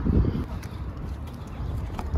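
Wind rumbling on the microphone, with a few short knocks in the first half second.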